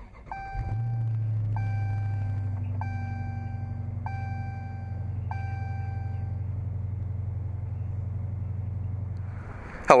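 Dodge Challenger Scat Pack's 6.4-litre Hemi V8 starting up and settling into a steady, deep idle. Over the first six seconds a dashboard warning chime sounds five times, about one every second and a quarter.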